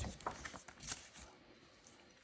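Printer-paper sheets rustling and sliding over a tabletop as one sheet is lifted away and another laid down and smoothed flat by hand. There are a few soft rustles in the first second, then it dies down to near quiet.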